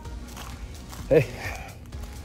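A man's brief vocal sound, a single short voiced syllable about a second in, over low steady background sound.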